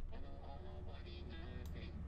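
A rap vocal played back through iZotope VocalSynth 2's 'Bad Robot' preset, edgy robotic vocal synthesis, over a beat with a steady low bass. The effected vocal is faint, super low in the mix.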